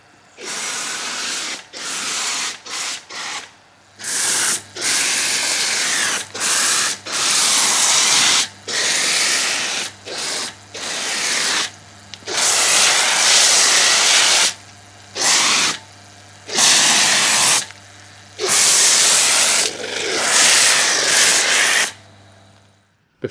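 Pressure washer foam lance spraying snow foam onto a car, a loud hissing spray with a low pump hum beneath. The spray comes in repeated bursts of about half a second to two seconds, cut by short pauses as the trigger is released and pulled again.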